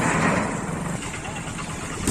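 Motorcycle engine idling steadily under a loud rushing noise that fades away over the first second.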